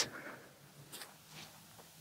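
Quiet open-air background with a few faint, short clicks.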